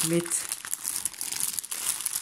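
Clear plastic packaging bag crinkling as hands move and turn it over, a continuous rustling crackle.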